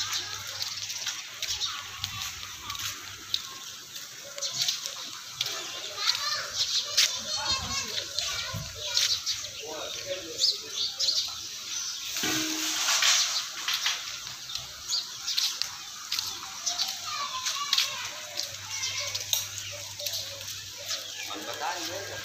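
Background voices of adults and children talking and calling, with many scattered short clicks and scuffs.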